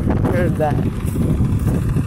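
Farm tractor's diesel engine running steadily close by, a loud, low, fast-pulsing chug, with a brief voice over it about half a second in.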